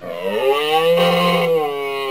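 A moose call sound effect: one long, loud bellow that rises in pitch at the start, holds steady, then sinks and fades away.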